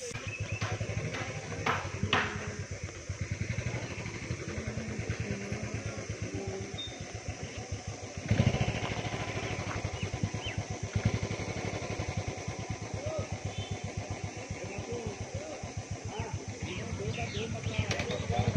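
An engine running steadily, its even low pulsing swelling louder about eight seconds in, with birds chirping over it.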